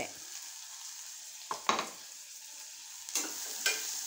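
Steady sizzling hiss of chicken and tomato cooking in a pressure cooker pan, with a sharp metal clink about halfway through, then a spoon clinking and scraping against the pot as stirring begins near the end.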